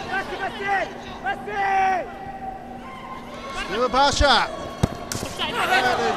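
Match commentary voices over the stadium sound of a football game, with two sharp thuds about four and five seconds in.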